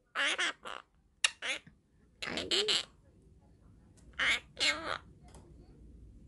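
Blue Quaker parrot (monk parakeet) chattering in short, speech-like calls, in four bursts with pauses between.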